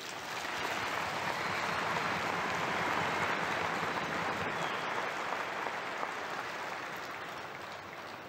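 Large arena crowd applauding. The clapping swells over the first few seconds, then slowly dies away.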